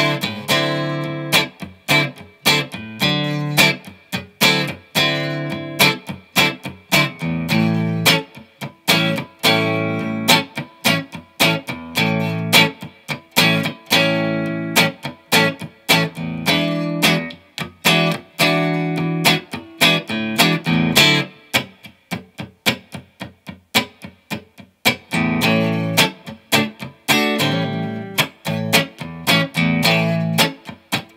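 Telecaster-style electric guitar playing an old-school rock-and-roll blues rhythm, unaccompanied: steady, choppy chord stabs with short gaps between them, moving through an A7 and D9 progression.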